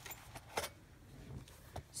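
Paper inserts being lifted off the open metal rings of an A5 ring binder: faint paper handling with a few light clicks, the sharpest about half a second in.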